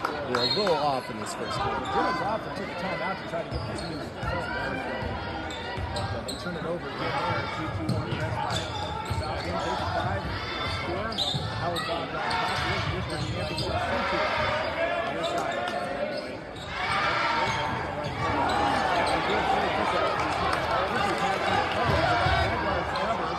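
Basketball game in a gymnasium: spectators' voices chattering throughout, with a basketball bouncing on the hardwood court.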